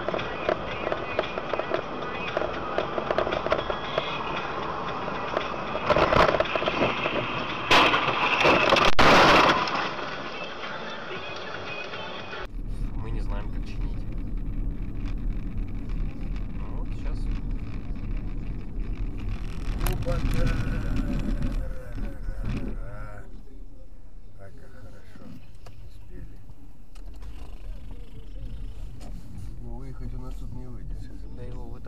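Dashcam audio from inside moving cars: road and cabin noise with voices, and loud, harsh bursts about six seconds in and again from about eight to nine and a half seconds in. After a sudden cut, a quieter car interior with a steady low hum.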